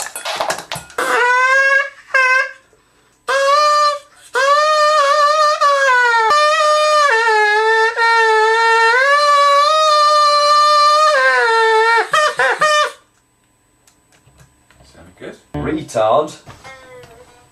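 A reedy wind instrument plays a loud melody of long held notes that step and slide between pitches. A short phrase comes first, then an unbroken run of about eight seconds that stops sharply near the end.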